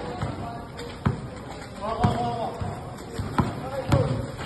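Basketball dribbled on a concrete court: four sharp bounces at uneven spacing, the last the loudest.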